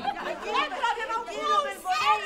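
Several people talking at once, voices overlapping.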